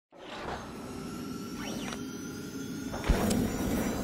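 Logo intro sting: a held electronic pad with quick sweeps rising and falling in pitch, building to a deep hit about three seconds in that rings on to the end.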